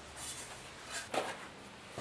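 Quiet workshop with a single soft knock about a second in, as a beaded sheet-steel patch panel is handled.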